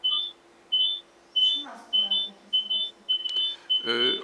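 Repeated short electronic beeps, two high tones sounding together, about three beeps every two seconds, coming through a video call's audio.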